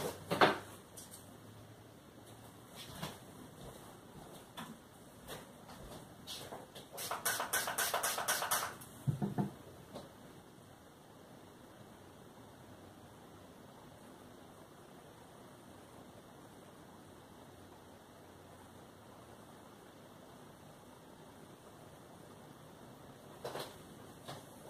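Off-camera paint mixing: a few clicks and knocks, then a quick run of rapid, even taps about seven seconds in, a brush working watered-down paint in a container. A single knock follows just after nine seconds, then faint room tone.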